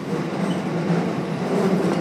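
Chiyoda Line subway train running through a tunnel, heard from inside the car: the steady running noise of its wheels on the track and its motors.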